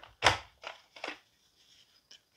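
Hard plastic toy parts clacking as a toy blaster vehicle is pulled off its plastic base: one sharp knock about a quarter second in, then two fainter clicks.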